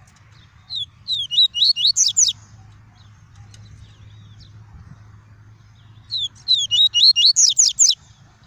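Male yellow-bellied seedeater (papa-capim) singing its "tuí tuí" song: two phrases of about ten quick, sweeping whistled notes, each phrase lasting about a second and a half, some five seconds apart.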